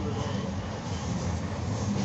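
Steady rumble of a moving train, heard from the carriage window as the wheels run along the rails, with a sharp clack right at the end.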